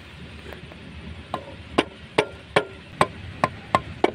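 A plastic-headed mallet tapping a new rubber oil seal into a gearbox housing bore, seating it evenly. A couple of faint taps come first, then about seven sharp, evenly spaced knocks, roughly two and a half a second, each with a short ring.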